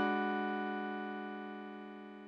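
A sustained electric piano chord fading slowly away, with a slight wavering and no new notes struck.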